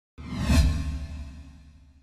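Broadcast news transition sound effect: a whoosh with a deep low hit that starts suddenly just after the cut, is loudest about half a second in, and fades away over the next second and a half.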